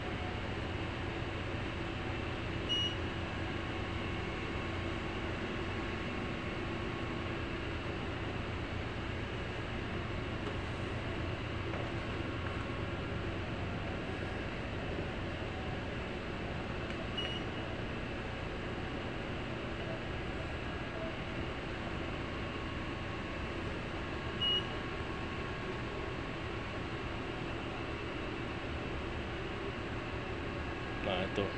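Steady hum of machinery and ventilation on a supply boat's bridge. Three short, high electronic beeps from the bridge equipment sound over it: one early, one about halfway through and one later on.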